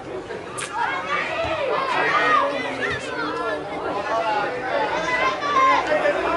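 Young voices shouting and calling out over one another, the players' and sideline calls of a youth football match in play, with no clear words.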